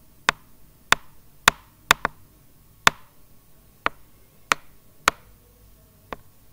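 A series of sharp, separate clicks or taps, about nine in six seconds at an irregular pace, two of them close together about two seconds in.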